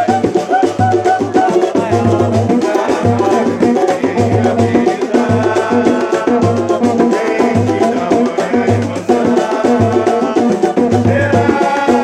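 Pagode samba: a man singing while strumming a four-string Brazilian banjo (banjo-cavaquinho), over a deep drum beat about once a second.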